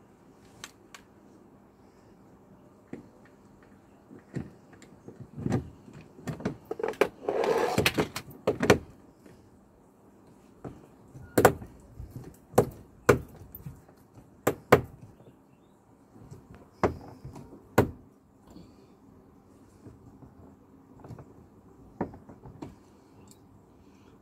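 Irregular clicks and knocks of a hand screwdriver and Torx bit working at a screw in a car's plastic door trim, with a longer scraping rustle about seven seconds in.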